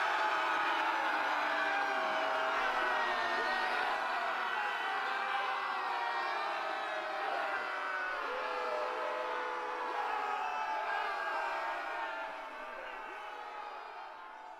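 A crowd of many overlapping voices, chattering and calling out together, fading away over the last two seconds or so.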